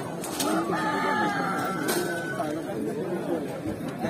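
A rooster crowing: one long, steady call lasting under two seconds, starting about a second in, over market chatter.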